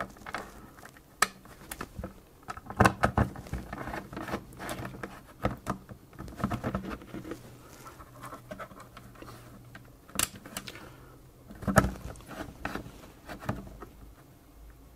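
A screwdriver driving short screws into the plastic case of a Sinclair ZX81. Irregular small clicks and scratches of the screwdriver, screws and hands against the plastic, with a few louder knocks about three seconds in and around ten and twelve seconds.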